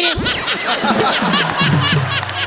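Laughter after a punchline, laid over a comic music sting: a deep tone swoops down right at the start and low notes step downward in the second half.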